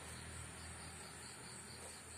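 Field insects chirring in the background: a faint, steady high-pitched trill.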